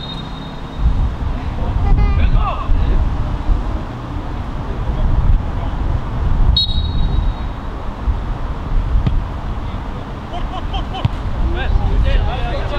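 A referee's whistle gives one short blast about six and a half seconds in, over a steady low rumble. Players' shouts come a couple of seconds in and again near the end.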